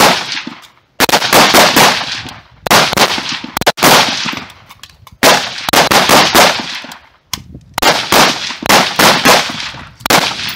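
Rapid-fire strings from several semi-automatic rifles on a firing line: sharp cracks in irregular clusters of several shots each, overlapping and ringing out, with short pauses between clusters.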